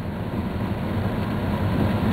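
Steady road noise inside a moving car's cabin on a rain-soaked road: a low rumble under an even hiss from the tyres on the wet surface.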